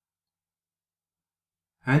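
Complete digital silence between narrated lines, then a man's narrating voice begins just before the end.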